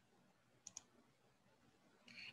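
Two quick computer mouse clicks, close together about two-thirds of a second in, over near silence. They start a video playing.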